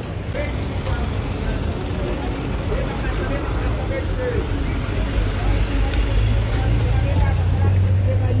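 Busy street sound beside idling matatu minibuses: a steady low engine hum that grows louder in the last couple of seconds, under a mix of passers-by's voices.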